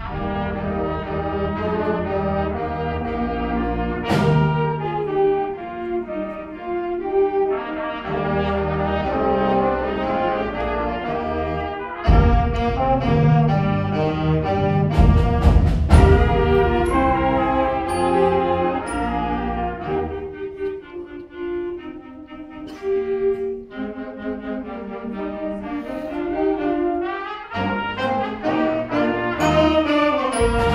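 School concert band playing a fast medley of Christmas carols, brass carrying the tunes, with a few sharp percussion hits along the way.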